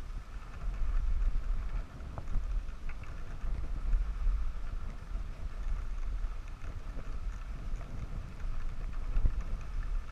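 Wind buffeting the microphone of a skier moving downhill, with an uneven rumble that swells and fades. Under it is the steady hiss of skis sliding over packed snow.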